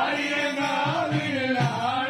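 Voices singing a Tamil devotional song to Sastha (Ayyappan) in a chant-like style, over a steady low beat.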